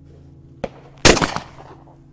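A single shot from an over-and-under shotgun about a second in, dying away over about half a second, with a short sharp click just before it.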